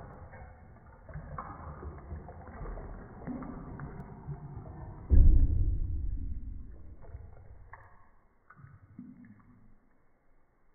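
Bathtub water gurgling and sloshing as a model ship's raised stern sinks, with small ticks and knocks, and a much louder low rush about five seconds in as the stern goes under, fading over the next few seconds.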